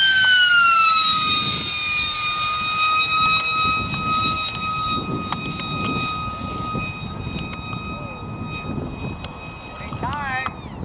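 ParkZone F-27Q Stryker's brushless electric motor and propeller whining high overhead at speed. The pitch drops over the first second or so, then holds steady.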